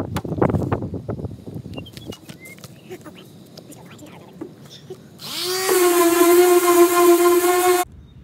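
Short rough scraping and rubbing strokes on a car body panel, then about five seconds in an electric power tool spins up to a steady high whine and runs until it cuts off suddenly near the end.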